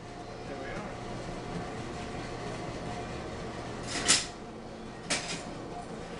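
Jet metal-cutting bandsaw running steadily without cutting, a constant motor hum. Steel plate pieces clank sharply twice, loudest about four seconds in and again about a second later.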